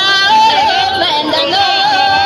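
A person singing in a high voice, holding long notes with quick wavering turns between them.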